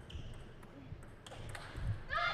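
A table tennis rally: a series of sharp clicks from the celluloid-type plastic ball striking the paddles and bouncing on the table, with a brief ringing ping near the start.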